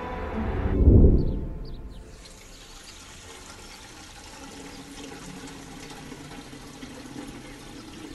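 Water running from an outdoor tap into a metal bucket, a steady hiss. A low swell peaks about a second in and dies away before the water sound settles in.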